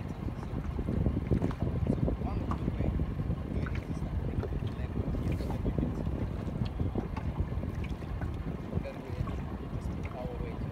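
Wind buffeting the microphone on open water: a steady, gusty, low noise with no engine heard.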